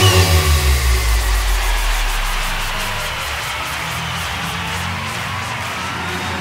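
Big room EDM track going into a breakdown: the full beat stops, a deep bass note slides downward over the first couple of seconds, then low held synth tones continue under faint regular high ticks. A faint rising sweep builds through the second half.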